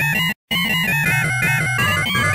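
Synthesized alarm tones in a fast, pulsing pattern, about six pulses a second, with a shifting high melody over a low throb. The sound cuts out twice near the start before running on.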